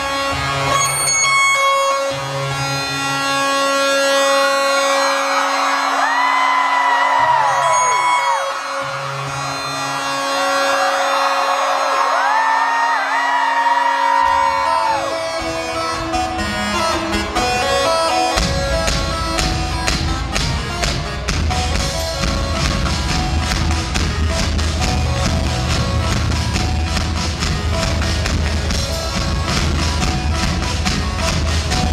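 Live keyboard-and-drums band music heard from the audience: sustained synthesizer chords open the song, with cheering from the crowd, and a heavy drum-and-bass beat comes in about 18 seconds in and carries on.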